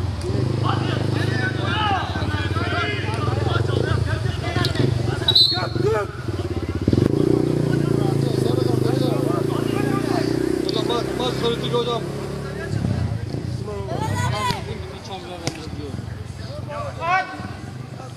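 A motor vehicle engine running steadily, fading out about thirteen seconds in, with scattered shouts from players on the pitch over it.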